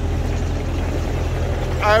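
Steady low engine hum of a vehicle idling, with a man's voice starting near the end.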